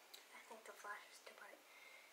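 Faint, very quiet speech, like a whisper, over near-silent room tone.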